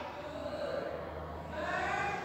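Faint, indistinct voices in the background over a low steady hum.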